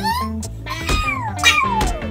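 A cartoon character's high-pitched cry over background music: a short rising yelp, then a long falling wail. A sharp knock about one and a half seconds in, as the thrown rider hits the track.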